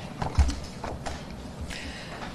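A few short clicks and dull knocks, about six in two seconds, the loudest a low knock about half a second in: handling noise at a lectern fitted with microphones.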